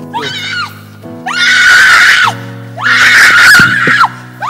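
A woman screaming in high-pitched shrieks: a short cry at the start, then two loud, drawn-out screams about a second long each, over sustained keyboard chords.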